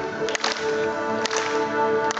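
Orchestra playing live, holding sustained chords, with a few sharp percussion strikes: a quick cluster shortly after the start and a stronger single strike past halfway.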